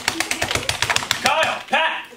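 Fast typing on a computer keyboard, a quick run of key clicks, then a voice cutting in near the end.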